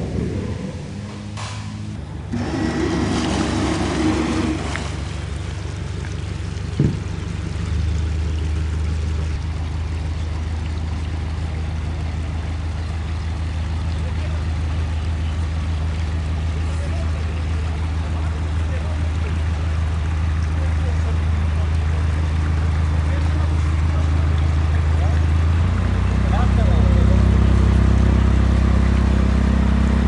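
Passenger ship's diesel engine running with a steady low hum, which grows louder near the end.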